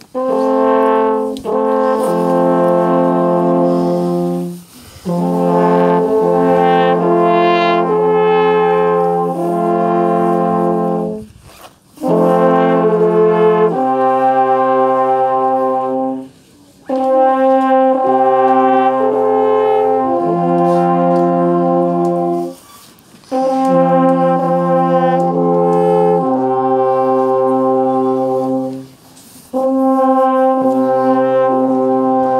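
An ensemble of eight alphorns playing a slow piece in held chords. The phrases last a few seconds each and are separated by short breaks, with the low note changing from phrase to phrase.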